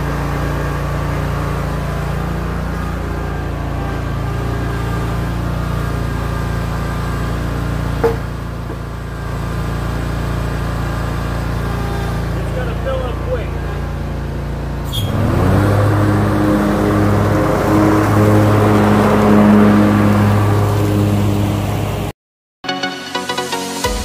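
Scag Cheetah zero-turn mower engine running steadily at low speed, then revving up about fifteen seconds in: the pitch rises and it grows louder, with a rushing noise over it.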